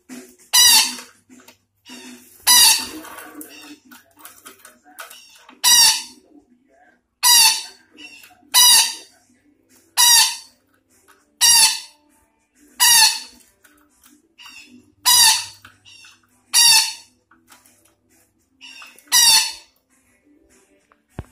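Betet Sumatra parakeet giving loud, harsh screeching calls, about eleven in a row, each about half a second long and repeated every second or two.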